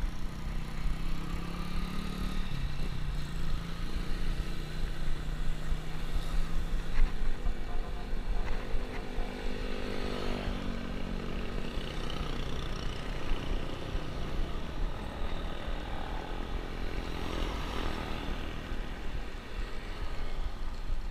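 Wind rumble on an action camera during a bicycle ride. A motorcycle engine runs alongside for the first several seconds, then slides up and down in pitch as it passes about ten seconds in.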